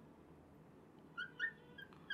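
Faint, short squeaks of a marker dragging on a glass writing board while a word is written, a few of them in the second half.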